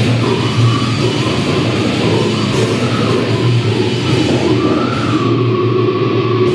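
Live underground heavy metal band playing loud: distorted electric guitars, bass and drum kit. A held, slightly wavering high note comes in near the end.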